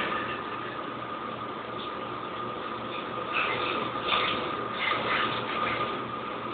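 Wooden toy trains handled on a wooden track, with light clattering a few times in the second half over a steady faint hum.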